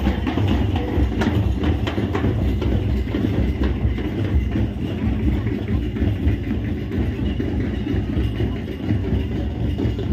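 Folk dance drumming on hand-played barrel drums over a steady low rumble. The drum strokes are plainest in the first two seconds, then blur into the rumble.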